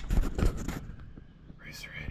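Rustling, rumbling handling noise on the camera microphone as the camera is swung around, followed near the end by a faint whisper.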